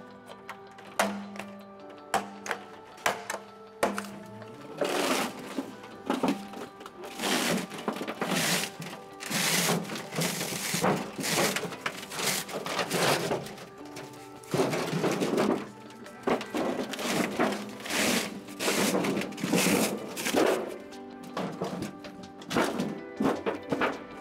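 Background music over the work of stripping a water heater. Sharp knocks and thunks come first, then repeated rough scraping and tearing as the sheet-metal jacket and foam insulation are pulled off the steel tank.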